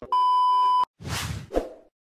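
A steady 1 kHz test-tone beep of the kind that goes with TV colour bars, lasting under a second and cutting off abruptly. It is followed by a brief noisy whoosh sound effect ending in a low thud.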